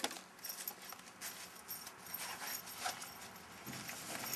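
A sharp click, then a run of irregular light clicks and rattles as the parts of a compressed-air-foam backpack sprayer are handled while it is readied for filling.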